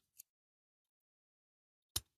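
Two short clicks with near silence between them, a faint one just after the start and a louder one near the end. They come from a metal tool working at a plastic part of a diecast model car.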